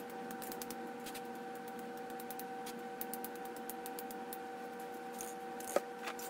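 A steady background hum with faint, scattered small ticks of spray-can handling. Near the end comes a single sharp knock as a spray can is set down on the painting board.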